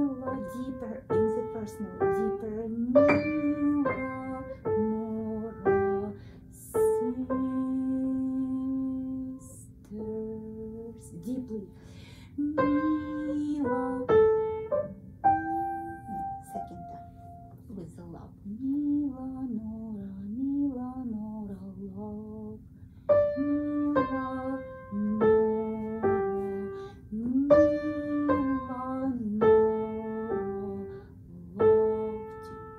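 Upright piano played by a beginner: a simple melody in short phrases, notes struck mostly one at a time with brief pauses between phrases. Partway through, a voice sings along with the melody.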